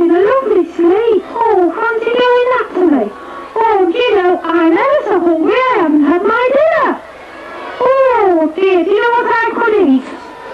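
Punch's swazzle voice in a Punch and Judy puppet show: a buzzy, reedy voice in quick bursts of syllables, its pitch rising and falling sharply, with a short break about seven seconds in.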